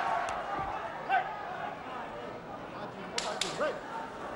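Boxing arena crowd shouting and calling out, with two sharp smacks in quick succession about three seconds in, plus a lighter click near the start.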